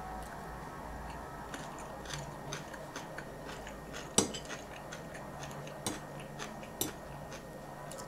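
A metal fork clinks and scrapes against a ceramic plate as spaghetti is twirled and picked up, in scattered short clicks. The loudest clink comes about four seconds in.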